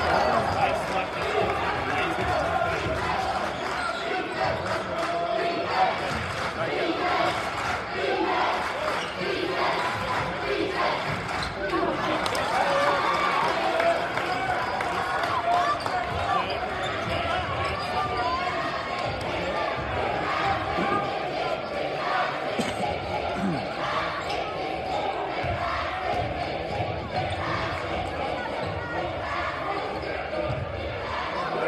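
A basketball being dribbled on a hardwood gym floor during play, with repeated bounces over the continuous murmur and calls of a crowd in the bleachers.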